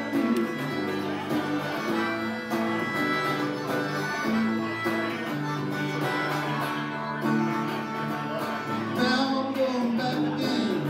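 Harmonica playing held lead notes over a strummed hollow-body electric guitar through a small amplifier, a live instrumental break without singing.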